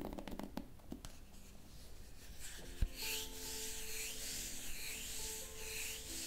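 Wooden hairbrush stroking through long hair, a rhythmic brushing roughly once a second from about halfway in. A few light handling clicks come at the start, and a single sharp thump comes just before the brushing begins, over soft background music.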